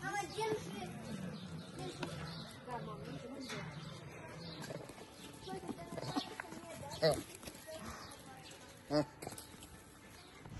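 Faint, indistinct voices in the background, with a few brief louder pitched sounds about six, seven and nine seconds in.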